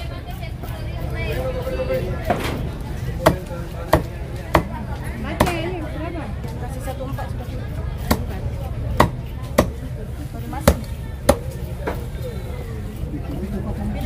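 Large cleaver chopping fresh tuna against a round wooden chopping block: about ten sharp chops at irregular intervals, over a steady low background rumble.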